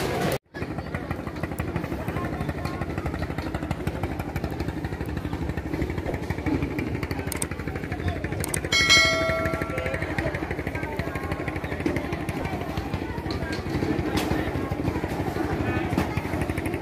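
A small engine running steadily with a fast, low, pulsing beat. About nine seconds in, a brief pitched tone sounds for roughly a second.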